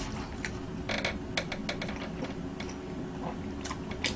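Close-miked mouth sounds of a person chewing a mouthful of soft chocolate cake: scattered short wet clicks and smacks, busiest around one to two seconds in.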